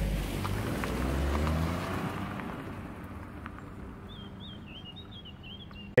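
A car passes by, its engine and tyre noise swelling about a second in and then fading away. Near the end a bird sings briefly.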